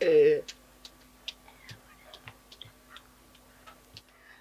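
A person's short vocal exclamation right at the start, falling in pitch, then quiet with faint, scattered small clicks and taps.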